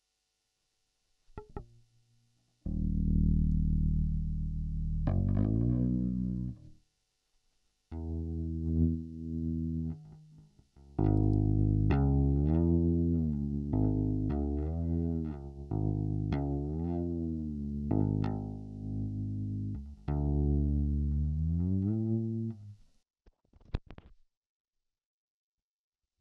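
Electric upright bass string plucked and heard through a homemade, untested pickup with a ceramic magnet, held over the string. A few open-string notes ring out, then from about halfway a run of plucked notes with hammer-ons steps the pitch up and down about once a second.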